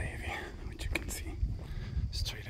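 Soft, half-whispered speech over a low, constant rumble of wind on the microphone, with a few faint clicks.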